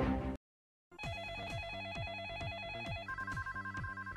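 Music cuts off, and after a half-second of silence an electronic telephone ring starts: a warbling trill that jumps higher about two seconds later, over a run of quick falling tones. It is the ringing-phone opening of a radio call-in show's jingle.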